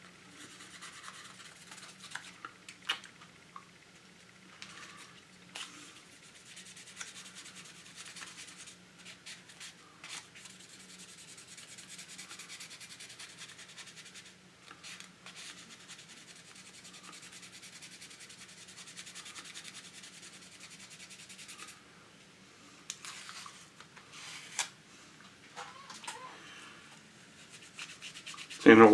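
A 6,000-grit Micro-Mesh sanding pad, wet with soapy water, is rubbed by hand over gloss-black paint on a plastic model car body. It makes a faint, soft scrubbing hiss, with a few light clicks and brief pauses between strokes.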